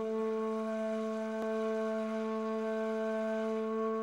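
Ney, the end-blown reed flute, holding one long low note steady in pitch, with a faint click about a second and a half in.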